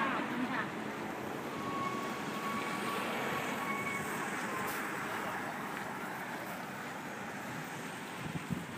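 Outdoor roadside ambience: steady traffic noise with distant voices, and a faint held tone for about three seconds in the middle.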